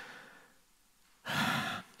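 A man's audible breath into a close microphone, a noisy rush lasting about half a second, coming after a short silence and just before he speaks again.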